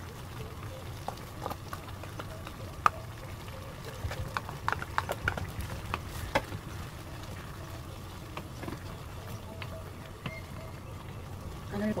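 Wooden spoon stirring a thick gang-doenjang (soybean-paste) stew in an earthenware pot, with scattered knocks and clicks of the spoon against the pot, most of them between about one and six seconds in, over a steady low hum.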